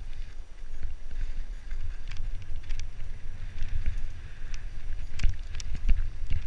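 Mountain bike riding fast down a dirt forest trail, heard from a helmet camera: tyres rumbling over dirt and roots and wind buffeting the microphone, with sharp clacks and rattles from the bike over bumps, loudest a little after five seconds in.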